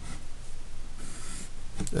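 Pencil strokes scratching on graph paper, drawing lines to box in a written answer: two light strokes, the second about a second in.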